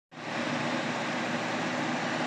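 Steady whooshing machine-like noise with a faint low hum, fading in just after the start, as from a fan or ventilation running.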